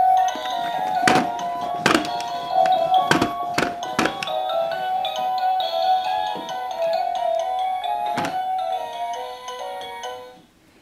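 A simple electronic tune from a baby's musical plastic toy elephant, its notes changing every half second or so, with about six sharp knocks of the plastic toy and tray being struck. The tune stops near the end.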